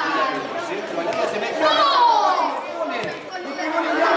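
Players and spectators at a football match shouting and chattering over one another, with one loud shout about halfway through.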